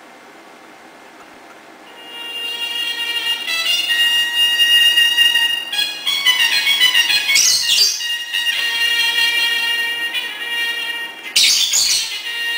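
Trumpet playing high, held notes that begin about two seconds in, with a run of quickly changing notes in the middle and a short harsh blast near the end.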